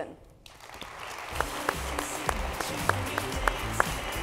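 Audience applause building about half a second in, with walk-on music starting under it: a short high note repeated about three times a second over a low bass beat.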